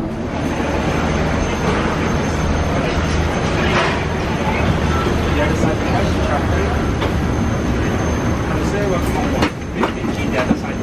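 Steady mechanical rumble at an airliner's boarding door, with a low hum and a faint high steady whine running under indistinct voices.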